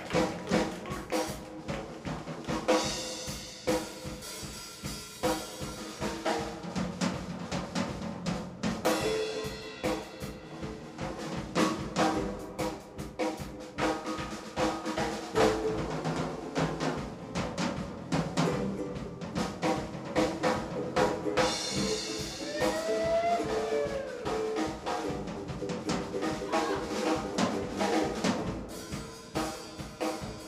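Live band playing an instrumental passage led by a drum kit, with snare and bass drum hits coming thick and fast over sustained bass and ukulele notes.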